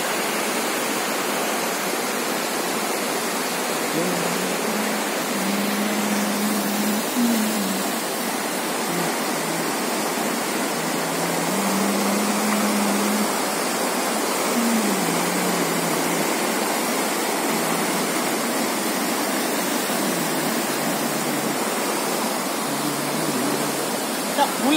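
Muddy floodwater pouring over a washed-out concrete road bridge in a loud, steady rush.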